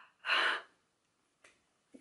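A woman's sharp, breathy gasp of amazement, once, lasting about half a second.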